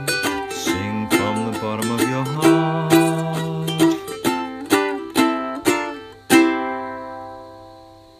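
Ukulele strumming the closing chords of a song, with a lower line moving underneath for the first half. A last chord is struck about six seconds in and rings out, fading away.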